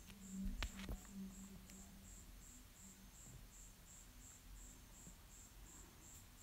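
Faint, evenly repeated high-pitched chirping, about three chirps a second, like a cricket, with a couple of soft clicks in the first second.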